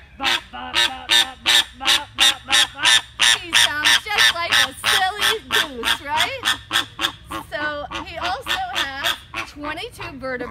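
A flamingo honking close by, a fast goose-like run of short calls at about four a second. The calls are loudest in the first half and ease off toward the end.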